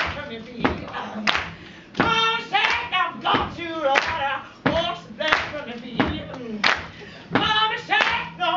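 A woman singing over hand claps that keep a steady beat, about three claps every two seconds.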